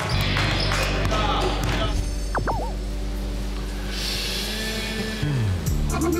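Edited background music with steady held low notes. About two and a half seconds in, a short warbling, looping sound effect plays over it.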